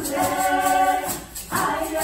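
A women's vocal ensemble singing together in harmony, over a steady high rattle on the beat about four times a second. The voices drop out briefly about a second and a half in, then come back in together.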